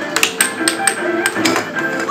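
Air hockey puck and mallets clacking sharply and irregularly, about half a dozen hits, over electronic arcade game music with steady held notes.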